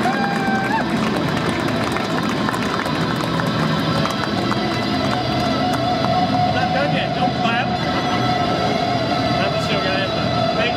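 Overdriven electric guitar playing, from a Jackson Juggernaut HT6 run through a Horizon Devices Precision Drive, MXR delay and reverb into a Mesa combo amp. A note is bent upward just after the start. Crowd chatter runs underneath.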